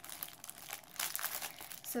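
Irregular crinkling of a clear plastic sample pouch being handled.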